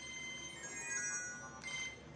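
Electronic phone ringtone: a short melody of falling notes, then one brief higher note near the end.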